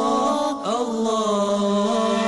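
Programme theme music: a chanted vocal line holding long, steady notes. About half a second in, the note breaks off and a new one slides up into place and is held.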